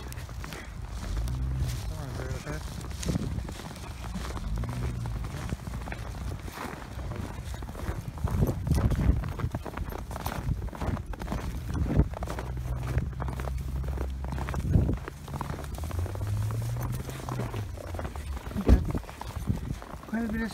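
Footsteps crunching through deep, fresh snow, irregular steps, over a steady low rumble on the microphone.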